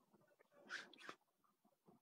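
Near silence: room tone, with one faint, short sound a little before the middle and a tiny tick just after.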